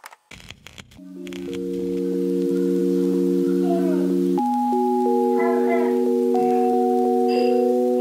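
Background music of held, sustained chords that swell in after about a second and change chord about halfway through.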